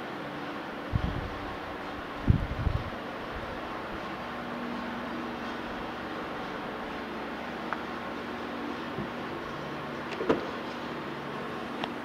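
Steady room hum with a few low thumps from the handheld camera moving. About ten seconds in, a click and thump as the Prius's rear hatch is unlatched and lifted.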